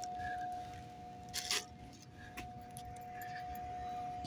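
A faint, steady hum at one pitch, with a brief cluster of clicks and rustles about one and a half seconds in.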